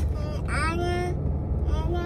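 A young child's voice, twice and briefly, over the steady low hum of a car's cabin.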